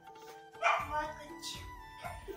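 A dog gives one short bark a little over half a second in, over faint background music with held notes.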